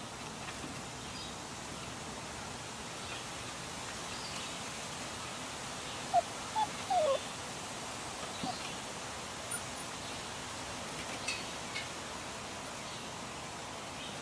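Samoyed puppies at play giving a few short, high, sliding yips close together about six to seven seconds in, over a steady outdoor hiss.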